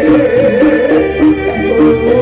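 Live Javanese traditional ensemble playing dance music: barrel drums and repeated stepped pitched notes under a wavering, sustained melody line.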